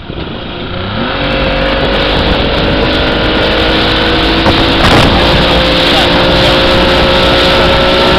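Tow boat's engine throttling up to pull a water skier out of the water, its pitch rising briefly about a second in and then holding steady at speed. A loud rush of wind and water runs under the engine.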